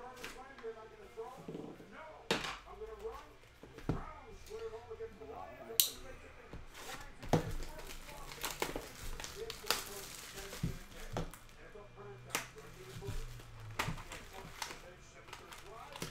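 A shrink-wrapped cardboard trading-card box being unwrapped and opened: plastic wrap crinkling and tearing, with irregular sharp clicks and taps from the cardboard being handled.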